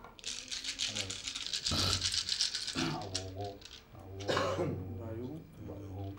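Divination seeds shaken together in cupped hands, a dense dry rattle through roughly the first three seconds and a shorter shake about four seconds in. A man's low voice intones alongside.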